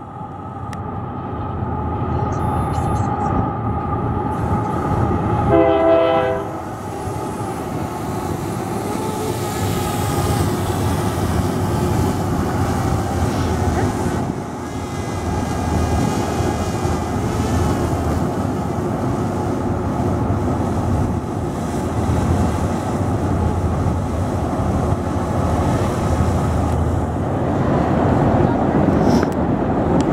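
Distant freight train horn sounding a long chord, rising to its loudest about six seconds in and then cutting off. It is followed by the steady rumble of the freight train rolling by.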